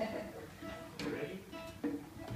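Nylon-string classical guitar played by plucking single notes that ring and fade, with new notes struck about a second in and again near the end.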